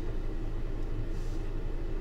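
Steady low hum with a faint even hiss: room background noise, with no distinct event.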